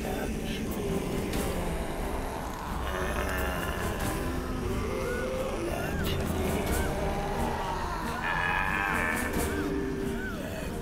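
Horror film soundtrack: a dark, low droning score with held tones and scattered sharp hits. In the second half, short chirping sound effects repeat about once every 0.7 s.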